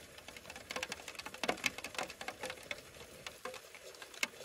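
A quick, irregular run of light clicks and taps, several a second, over a faint steady hum.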